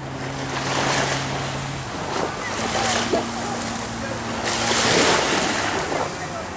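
Surf washing on a sandy beach, rising and falling in surges, with wind rumbling on the microphone. A faint steady low hum runs underneath, changing pitch a little about halfway through.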